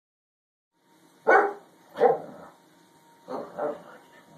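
A dog barking in play: two loud barks a little over a second in, then two softer barks near the end.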